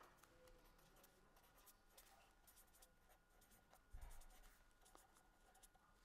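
Faint scratching strokes of a felt-tip marker writing on paper, with one soft low thump about four seconds in.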